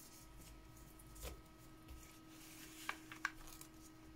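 Faint rustling of a paper envelope being handled and slipped into a card pocket, with a few soft paper taps about a second in and again near the end.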